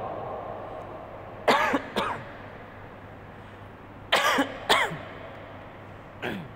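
A man coughing: two short coughs about a second and a half in, then two more about four seconds in.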